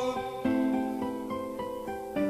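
Closing bars of a ballad. After the last held sung note stops, a guitar picks single notes, about three a second, each ringing out and fading.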